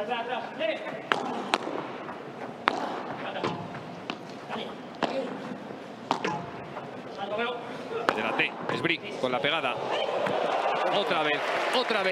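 Padel rally: sharp cracks of the ball struck by rackets and bouncing off the court floor and glass walls, coming at uneven intervals of about half a second to a second, over voices. A swell of voices builds near the end as the point finishes.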